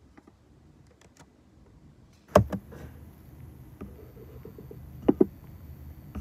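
Fingers tapping and handling the device right at the microphone: a few faint ticks, one sharp knock just before halfway, and two quick knocks in a row near the end.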